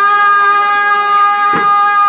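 A woman's voice holding one long, steady sung note, reached with a short upward slide just before. A single drum stroke sounds about a second and a half in.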